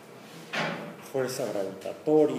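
A person's voice, indistinct, speaking briefly in the second half, after a short burst of noise about half a second in.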